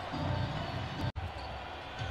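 Basketball being dribbled on a hardwood court amid low arena sound. About a second in the sound drops out for an instant at an edit cut.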